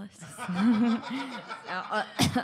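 Several people chuckling and laughing, mixed with some talk.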